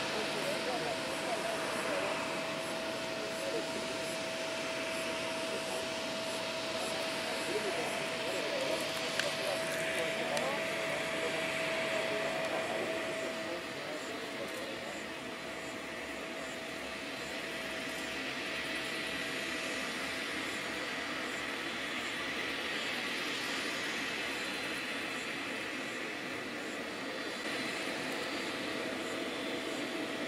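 Four turboprop engines of a C-130 Hercules running while it taxis, heard from a distance as a steady rushing drone with a steady high whine that fades out about halfway through.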